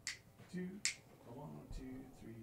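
A faint spoken count-in with finger snaps keeping the tempo: two sharp snaps just under a second apart, with the count "two" spoken between them and more counting after.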